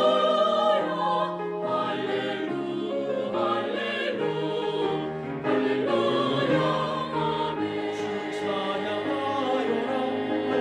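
Mixed-voice vocal ensemble singing a gospel song in harmony, a refrain of "hallelujah" and "amen".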